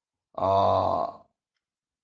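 A man's voice holding one drawn-out syllable at a steady pitch for about a second, starting a third of a second in.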